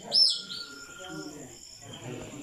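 A bird's sharp, high chirp just after the start, the last of a run of chirps repeated about every two-thirds of a second, followed by faint voices.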